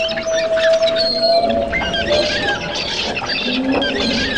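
Many birds chirping and squawking over one another in a dense, crowded chorus of short rising and falling calls. A steady hum-like tone runs underneath and fades out about two seconds in.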